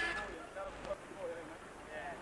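Indistinct voices talking and calling out, loudest in the first second.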